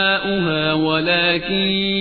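A man's voice chanting a melodic devotional invocation unaccompanied, holding long sustained notes and stepping to a new pitch twice.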